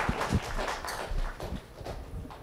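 Audience applause thinning out into scattered single claps that die away.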